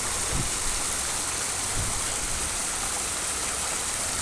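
Steady rush and splash of water pouring into a backyard koi pond from its waterfall.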